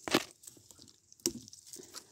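Short dry crackles of dead leaves and plant stems being handled: one sharp crunch at the start and a shorter one about a second later.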